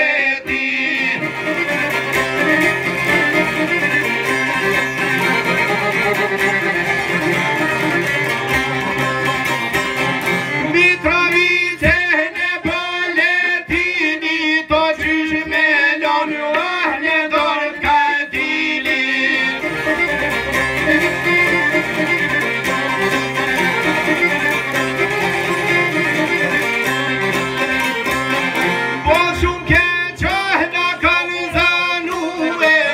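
Live Albanian folk music on two long-necked plucked lutes and an accordion, the accordion holding sustained notes under the strummed and picked strings. Between about 11 and 18 seconds the melody becomes busier, with ornamented gliding notes.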